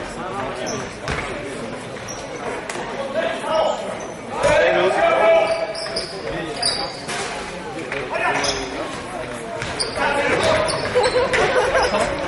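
Basketball game sounds in a large sports hall: the ball bouncing on the hardwood court with short knocks throughout, brief sneaker squeaks, and players shouting, loudest about four seconds in.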